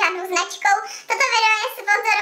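Speech only: a woman talking, with a fairly high, lively voice.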